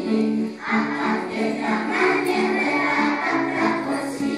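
A group of young children singing a song together in chorus, with a short break between phrases about half a second in.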